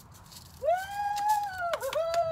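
A long, high-pitched drawn-out voice call that starts about half a second in, holds its pitch and dips briefly near the end, with irregular rattling clicks alongside it.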